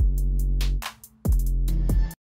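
Electronic background music with a drum-machine beat: deep kick drums about a second and a quarter apart over held bass notes, with light high ticks.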